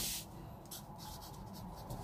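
Marker pen writing on paper, faint scratchy strokes as a short formula is written.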